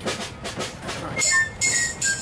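Concert band percussion making a train effect: a rhythmic chugging of short scraping strokes. About a second in, short high whistle-like tones join, stepping down in pitch.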